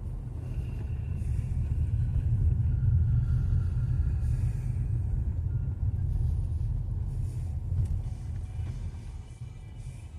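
Low rumble of a car heard from inside the cabin as it drives slowly along a rough lane, tyres and engine, easing off over the last couple of seconds as the car slows.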